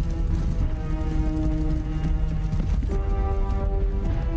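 Soundtrack music with long held notes, moving to a new chord about three seconds in, over the dense, continuous hoofbeats of a large body of cavalry horses advancing together.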